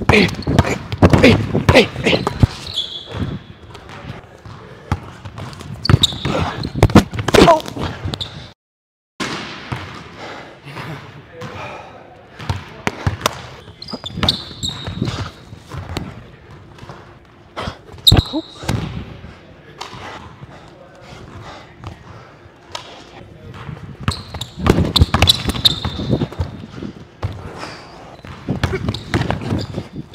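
A basketball dribbled on a hardwood gym floor, with repeated sharp bounces and sneakers squeaking on the boards several times. There is a brief dropout about eight and a half seconds in.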